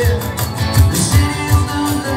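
Live band playing country-flavoured rock: amplified guitars with held notes over a steady beat of low thumps, about four a second.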